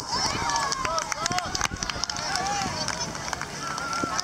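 Overlapping shouts and calls of players and spectators at a youth soccer match, no words clear, with a few brief sharp knocks among them.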